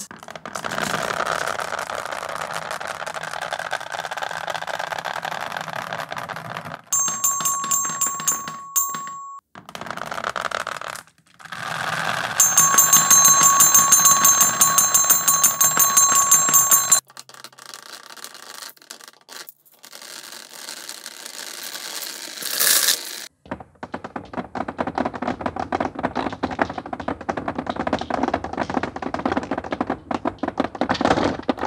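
Steel marbles clattering and rolling through a plywood marble divider channel and dropping into a plastic tub, as a dense stream of rapid clicks. Twice, about seven seconds in and again from about twelve to seventeen seconds, a loud alarm-like ringing tone with several steady pitches sounds over the clatter.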